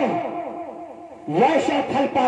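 A man's loud shouted exclamations through a stage microphone and PA with a heavy echo effect. The first shout trails off in fading, repeating echoes, and a second shout rises sharply in pitch about one and a half seconds in and is held.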